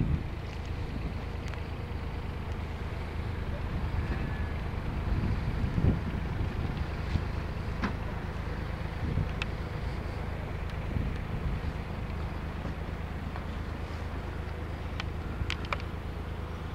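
Small digger's engine running steadily, with a few sharp clicks and knocks over it.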